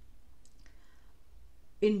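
A short pause in a woman's narration: a low steady hum with a couple of faint clicks about half a second in, then her voice resumes near the end.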